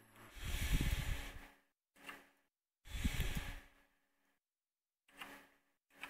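A man breathing close to the microphone: two long, strong exhales, about a second in and again at three seconds, with shorter fainter breaths between and near the end. Each breath cuts in and out with dead silence between and a faint hum underneath.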